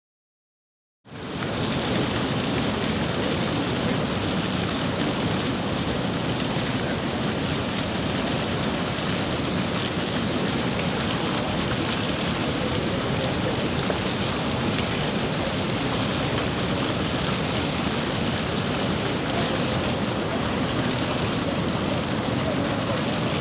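Steady rushing noise of a flaming fountain, its water spray and gas-fed flames, starting suddenly about a second in.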